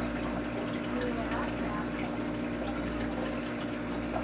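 Aquarium pump running steadily, a constant hum with moving water under it.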